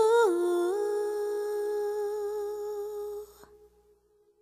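A singer's voice holding one long note. It dips slightly in pitch just after the start, is then held steady, and cuts off abruptly about three and a half seconds in.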